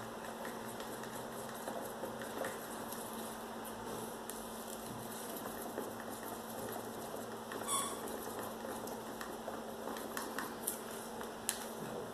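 Wooden craft stick stirring acrylic paint and Floetrol in a small plastic cup: soft, steady scraping against the cup, with a sharper click a little before the middle of the second half and a few more clicks near the end.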